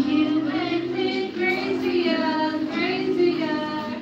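Karaoke singing: a voice singing into a microphone over a music backing track, with held and gliding notes.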